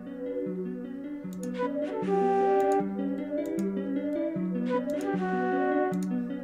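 Playback of a layered trap melody loop from SRX Orchestra sounds: a breathy flute line over a bell, the phrase repeating about every three seconds.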